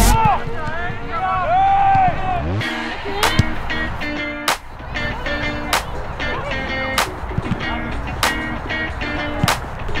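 Background music with sharp percussive hits on the beat and held tones.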